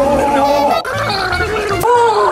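A person's voice making drawn-out gargling, gagging sounds as if choking on something in the throat, with a short break about a second in.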